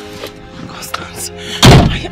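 A car door slams shut once, about one and a half seconds in, over background music with steady held tones.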